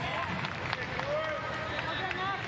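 Stadium ambience during open play in a soccer match: a steady crowd murmur with faint distant shouts from the pitch and stands.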